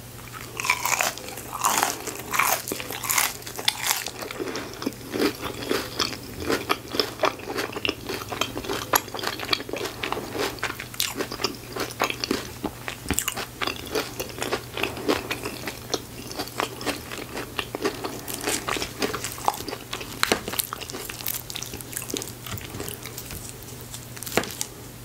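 Close-miked bites into a crunchy battered, deep-fried onion ring, loudest in the first few seconds, followed by long, steady crunchy chewing with many small irregular crackles.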